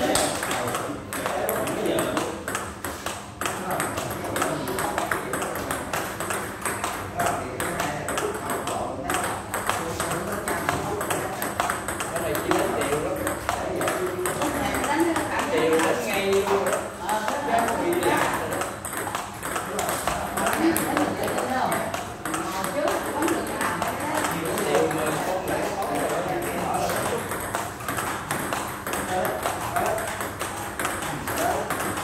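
Table tennis ball rallied forehand to forehand: a steady run of sharp clicks as the ball strikes the paddles and bounces on the table. Voices talk in the background.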